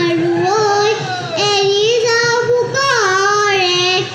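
Bihu music: a high, held melody line with sliding ornaments and rich overtones, pausing briefly for breath about a second in and again near three seconds.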